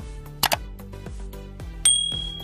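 Background music with a steady beat. About half a second in comes a quick double click, and near the end a bright bell ding rings on for about a second, the sound effects of an on-screen subscribe button being clicked.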